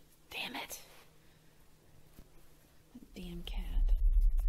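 A person's whisper about half a second in, a brief voiced sound around three seconds, then a low rumbling drone that swells in near the end.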